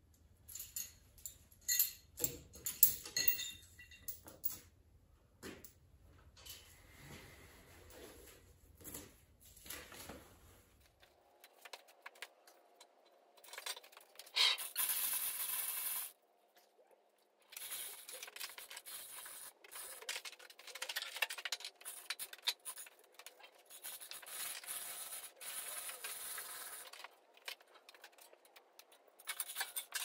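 Metal chain rattling and clinking as a chain hoist and lifting chain are handled to rig and raise a steel plate, with scraping and knocks. A louder scrape lasts about two seconds around the middle.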